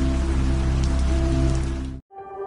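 A steady rain-like hiss over low, sustained background music tones, fading out near the end.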